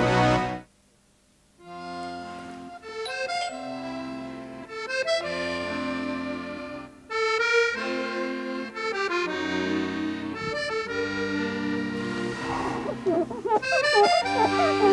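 Accordion music playing a melody over held chords, starting after about a second of near silence.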